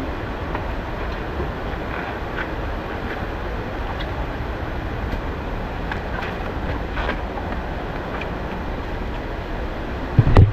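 Steady rushing of water, with a few faint clicks scattered through it.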